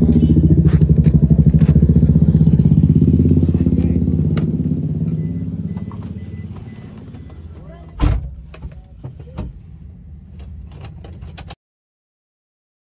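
A vehicle engine running close by, its sound dying away over a few seconds. About eight seconds in comes a sharp knock, followed by a few lighter clicks, and the sound cuts off just before the end.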